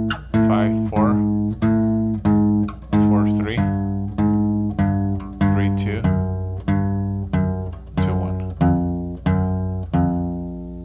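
Steel-string acoustic guitar playing a slow chromatic finger exercise on the low E string: single picked notes, about one every 0.6 s, each left to ring into the next. The notes alternate between two adjacent frets and step down the neck fret by fret.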